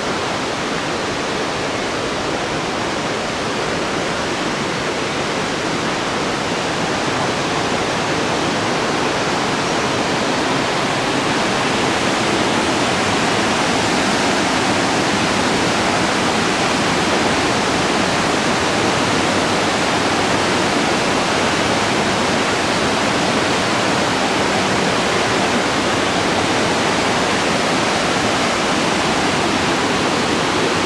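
Steady rush of a thermal river's cascades and waterfall tumbling over rocks, growing a little louder over the first dozen seconds and then holding even.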